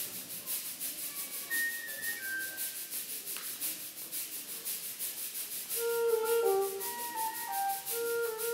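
School concert band playing a quiet passage: a shaker-type percussion keeps a steady run of quick strokes under a few sparse woodwind notes, and more of the band comes in about six seconds in.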